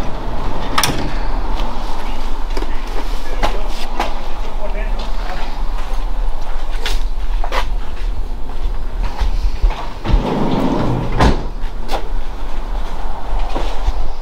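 Sliding side door of a Ram ProMaster cargo van being unlatched and slid open, with a series of sharp clicks and knocks from the latch, handle and door, over a steady low rumble.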